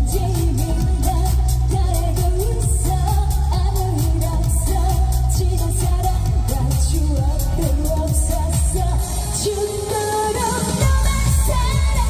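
A woman singing live into a handheld microphone over an amplified dance-pop trot backing track with a steady beat and heavy bass. Near the end the bass and beat drop out for about two seconds while she holds a note, then come back in.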